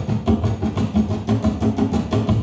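Live noise-punk band music: a fast, even percussive beat under low droning notes, with a dense, engine-like sound.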